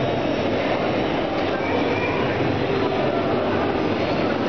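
FLY 360 motion-simulator pod rotating on its arm, giving a steady mechanical rumble of its drive and structure.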